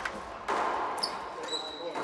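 A racquetball being hit around an enclosed court: a few sharp smacks about half a second apart, of ball off racquet and walls, with a hollow echo.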